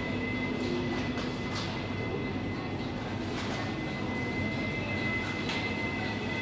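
Steady supermarket machinery drone, typical of refrigerated display cases and their fans: a low hum with a thin, high steady whine over a constant noise bed, and a few faint soft knocks.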